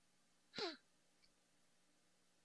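Near silence, broken about half a second in by one short sigh from a man, a quick breath that falls in pitch.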